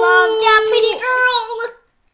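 A child singing wordlessly in long, high, held notes that glide up and down, stopping shortly before the end.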